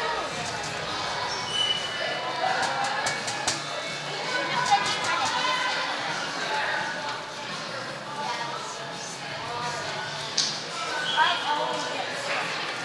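Calls and shouts of players and spectators in an indoor soccer arena, with a few sharp thuds of the ball being kicked, the loudest about five seconds in and two more near the end.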